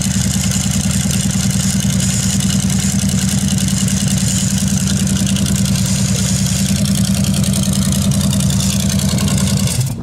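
Big-block V8 of a Hossfly barstool idling steadily through short open exhaust stacks; the sound shifts just before the end.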